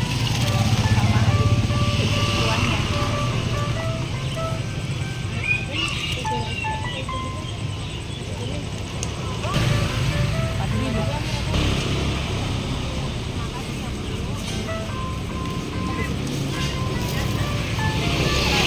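A simple melody of short, steady single notes, like a jingle, over the steady rumble of road traffic.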